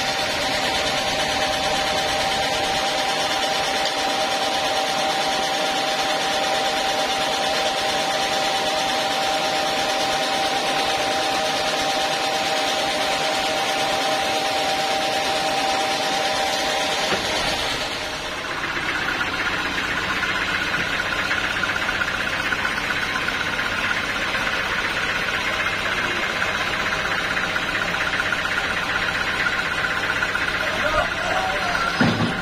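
Band sawmill machinery running steadily. About seventeen seconds in the sound dips briefly and changes, one steady tone giving way to a higher one.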